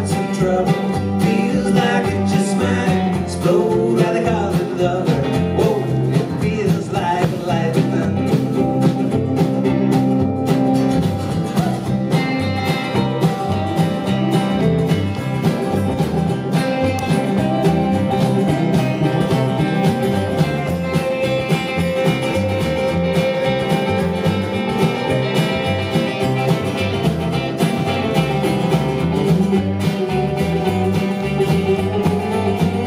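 A live band's instrumental break in a country-folk song, led by two guitars, one of them an acoustic flat-top, playing together over a steady rhythm.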